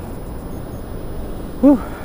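Steady rushing noise of surf and wind at the shore, with a man's short breathy "whew" about one and a half seconds in.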